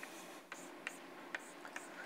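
Chalk writing on a blackboard: faint scratching with four short, sharp taps about half a second apart as the chalk strikes and lifts from the board.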